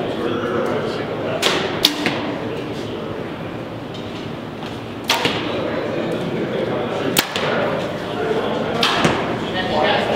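Compound bows being shot: about five sharp snaps of string release and arrow strikes on foam targets, spread across several seconds, over background chatter.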